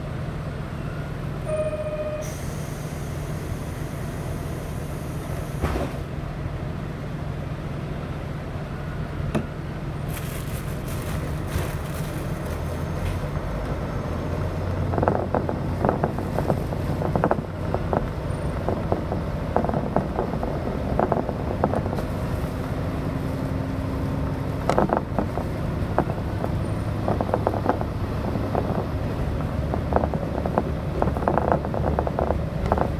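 Diesel railcar idling at a station, with a short electronic tone and a hiss of air about two seconds in. It then pulls away: the engine works harder and the wheels click over the rail joints from about halfway on.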